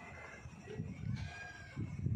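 Gusty wind buffeting the microphone during a night thunderstorm, with a faint drawn-out animal call about a second in.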